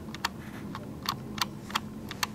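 Computer keyboard keys being typed, sparse sharp clicks at an uneven pace of a few a second, over a faint steady hum.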